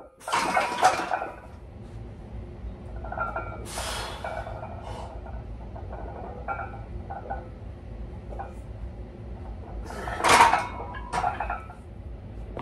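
A 330 lb barbell bench press in a power rack: forceful breaths from the lifter and clanks of the loaded bar and plates come in short bursts near the start, about four seconds in, and twice near the end. Lighter clatter and a low steady hum run between the bursts.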